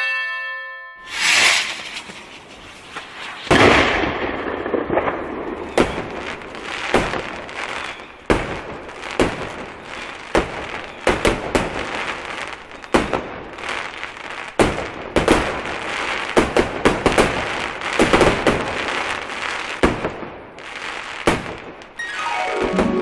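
Fireworks going off: a single burst about a second in, then from about three and a half seconds a continuous run of irregular bangs and crackles over a haze of noise.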